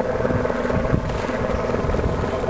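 Helicopter flying by, its engine and rotors giving a steady drone.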